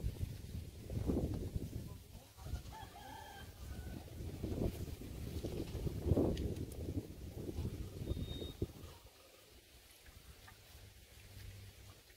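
Footsteps and rustling on dry straw mulch while a plastic watering can is handled. A rooster crows faintly about three seconds in.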